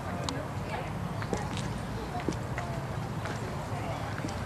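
Many people's footsteps clicking irregularly on a paved walkway, over a crowd's murmur of voices and a steady low rumble.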